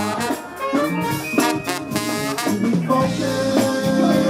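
Live funk band playing through a stage PA: drum kit beats under brass and other pitched instruments, with long held notes in the last second.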